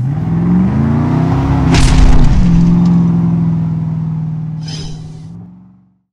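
Engine revving sound effect: the pitch climbs over the first second and a half, a loud hit comes about two seconds in, then the engine holds a steady note and fades out near the end.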